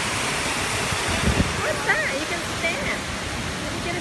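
Water falling over an artificial rock waterfall, a steady rushing. Voices come in briefly about halfway through.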